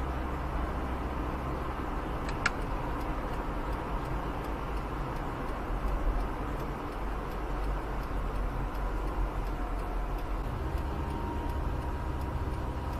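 Car idling while stopped at a traffic light, a steady low engine and cabin hum heard from inside, with a faint regular ticking and one brief click about two seconds in.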